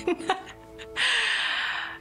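A loud, breathy gasp from a person, lasting about a second and starting about halfway in, over soft background music.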